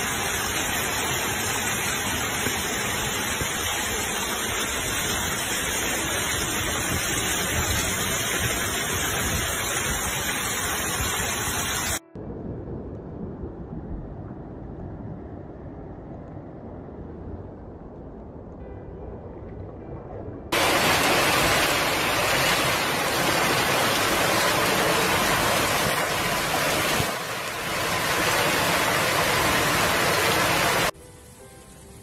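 Floodwater and heavy rain rushing through a street, a steady loud rush of water noise. About 12 s in it drops suddenly to a quieter, duller rush, and about 20 s in it comes back loud.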